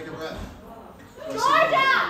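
A high-pitched voice calls out loudly from the audience in the second half, its pitch sliding up and down, after a stretch of faint hall murmur.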